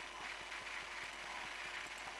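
Faint steady background hiss, the recording's noise floor, with no speech.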